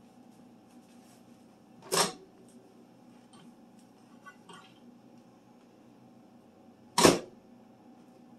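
GE over-the-range microwave door opened with a latch click about two seconds in, then shut with a louder clunk near the end. A faint steady hum runs underneath.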